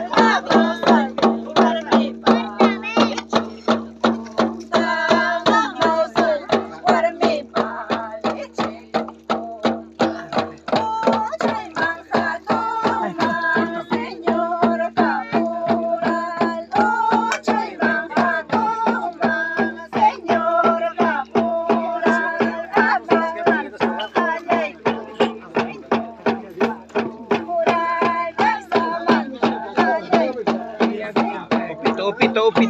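Women singing a waqanki, the Santiago fiesta song, in high voices in unison. They are accompanied by even beats on tinyas (small handheld drums), about two strokes a second, over a steady low tone.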